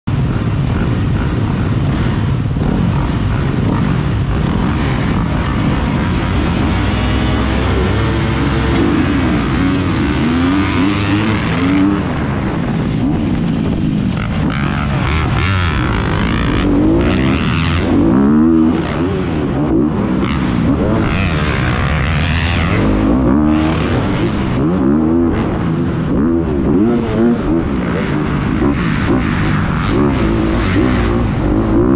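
Motocross dirt bike engine revving hard and easing off over and over, its pitch rising and falling with each burst of throttle and gear change while it is ridden around a dirt track.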